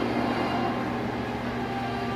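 The film soundtrack under a fire-lit fight scene, played through a TV speaker and picked up by a phone: a steady rumbling noise with a few held tones beneath it.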